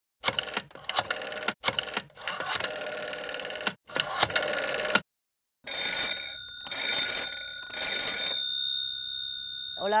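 A rotary telephone's bell rings in three bursts, each under a second long and about a second apart. Its high tones ring on faintly after the last burst. Voices fill the first half.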